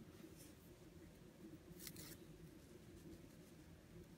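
Near silence: a faint steady room hum, with two faint, brief rustles of beading thread being drawn through seed beads, the longer one about two seconds in.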